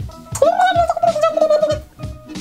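A woman's drawn-out, high-pitched laugh, rising and then held on one wavering note for over a second, over background music.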